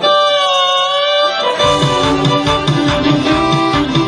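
Hammond Elegante XH-273 electronic organ played through a Leslie speaker. A held chord in the upper register wavers in pitch, then a bass line and a rhythmic accompaniment come in about a second and a half in.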